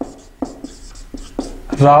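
Dry-erase marker writing on a whiteboard: about six short separate strokes and taps with a faint squeaky scratch as letters are drawn.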